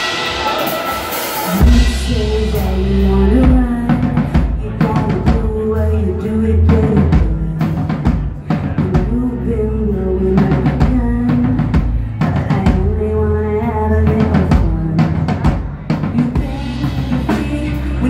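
Live electronic rock band kicking into its opening instrumental: heavy bass and drum kit come in about two seconds in, then a steady beat of kick and snare under a repeating synth riff.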